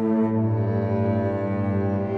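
Electronic keyboard music from a synthesizer: held chords of long, steady notes over a low bass note that pulses quickly.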